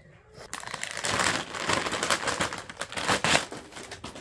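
Plastic packaging crinkling and rustling as a fabric hay net is unwrapped and pulled out. It starts about half a second in and goes on as a dense run of crackles.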